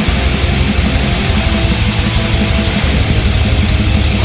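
Heavy metal played loud: distorted electric guitars over fast, dense drumming.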